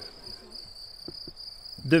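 A steady high-pitched tone, like an insect trill, with two faint soft knocks a little after a second in.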